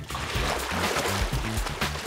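Water splashing from a swimmer's freestyle arm strokes in a pool, over background music with a steady bass line.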